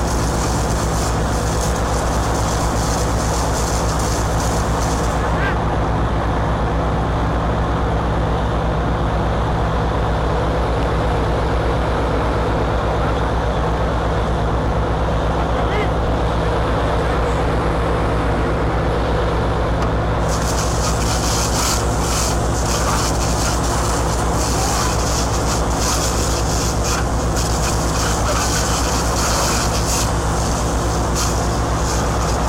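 A large engine running steadily with an even, unchanging hum. A high hiss lies over it for the first five seconds and again from about twenty seconds in.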